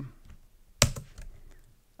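A single sharp keystroke on a computer keyboard, the Enter key pressed to run a typed terminal command, a little under a second in, followed by a few faint key taps.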